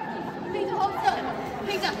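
Chatter of a group of young people's voices in a large cathedral nave.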